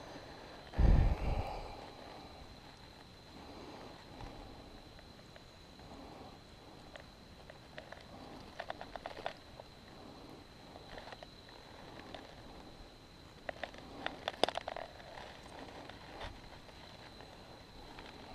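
Handling noise while a freshly caught bass is held in the hand: a heavy bump about a second in, then quiet stretches broken by two short bursts of rapid clicking and rustling. A faint steady high whine runs underneath.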